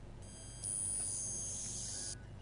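A quiet, steady, high-pitched whine of several thin tones sounding together. It comes in just after the start, grows louder about half a second in, and stops at the end.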